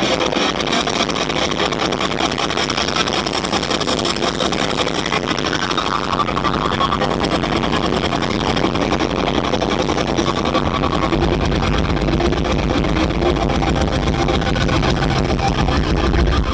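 Loud live rock band, drums and electric guitar, heard from the crowd as a dense, unbroken wall of sound. A wavering higher tone comes through around the middle, and the bass and kick get heavier about two-thirds of the way in.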